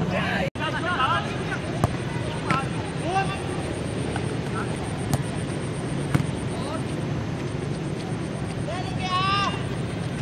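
Players shouting short calls during a small-sided football match, over a steady background noise, with a few sharp knocks scattered through it.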